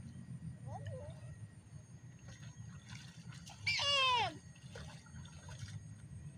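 Water sloshing faintly as a child wades through a muddy, flooded rice-field ditch. About four seconds in comes one short, loud call that falls in pitch.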